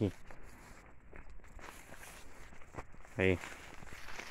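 Quiet footsteps of someone walking on soil between rows of rice and maize plants, with a few faint clicks.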